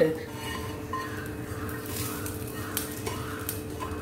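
Tempering scraped and tipped out of a non-stick pan into a pot of curry, with soft scraping and a few light clicks of utensil on cookware, over a steady hum.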